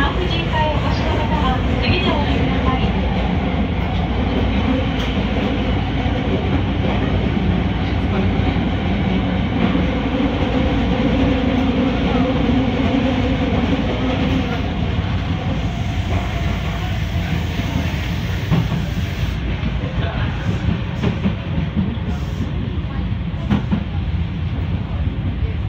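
Linear-motor subway train running steadily through a tunnel, heard from inside the car: a continuous rumble of wheels on rail, with a few clicks near the end.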